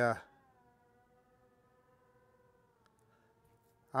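Near silence: only a very faint steady hum between the spoken words.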